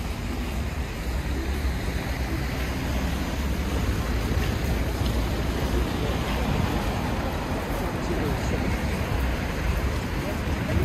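Steady city street noise: car traffic on a wide, slushy avenue with the murmur of passers-by's voices, and a low rumble of wind on the microphone.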